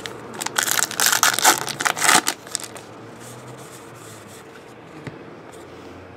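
A wrapper on a pack of trading cards is torn open by hand, a crackling, crinkling tear lasting under two seconds near the start. Only faint room noise follows.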